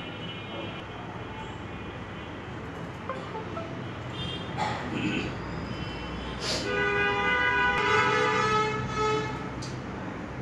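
Samsung Galaxy J7 Pro startup sound playing from the phone's speaker as it boots to the Samsung logo. A brief bright sweep comes about two-thirds of the way in, then a chime of held notes for about two and a half seconds, over a steady low background hum.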